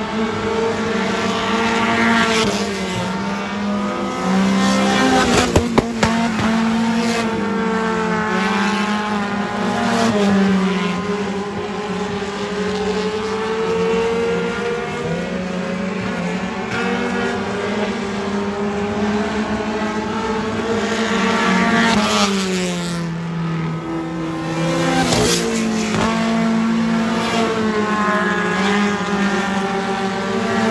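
Dirt-track race car engines running laps on a clay oval, their pitch rising and falling as the cars accelerate out of the turns and lift into them. A few sharp clicks come about five to six seconds in.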